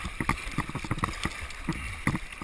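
Kayak paddle strokes splashing through a shallow, choppy riffle, with water rushing around the hull. Short irregular splashes and knocks come over a steady water noise.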